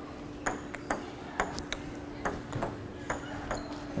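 Table tennis rally: a plastic ping-pong ball clicking back and forth off the paddles and the table, about ten sharp hits in quick, uneven succession starting about half a second in. A steady faint hum runs underneath.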